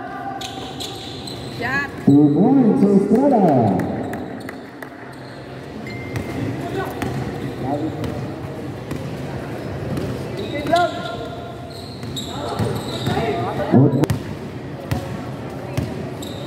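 Basketball dribbled and bouncing on a hard indoor court during play, echoing in a large hall, with men's voices calling out at times.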